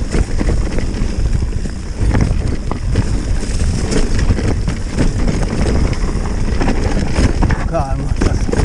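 Mountain bike descending rough forest singletrack: continuous clatter and rattle of the bike and its tyres over rocks, roots and leaves, with wind buffeting the microphone. A brief wavering squeal near the end.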